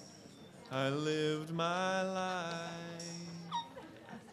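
A voice holding a wordless, howl-like sung tone, in two stretches: a short one under a second long, then a longer one of about two seconds, fairly level in pitch, that slowly fades. A short sharp sound comes just after it ends.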